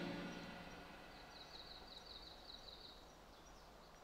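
The tail of a live rock band's song dying away within the first second, leaving near silence with a short run of faint high chirps.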